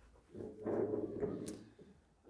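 A man's low, drawn-out hum or groan while thinking, lasting about a second and a half, with a short click near the end.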